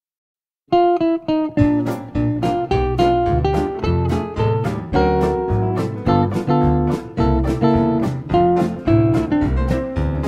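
Silence, then less than a second in a western swing band starts an instrumental intro: a guitar picks a run of single notes over a bass line with a steady beat.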